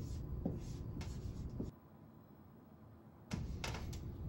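Dry-erase marker writing on a whiteboard: short scratchy strokes with a couple of brief squeaks. The sound drops out for about a second and a half in the middle, then the strokes resume.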